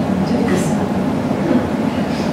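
Indistinct murmur of several people talking at once over a steady rumbling background noise, with no single clear voice.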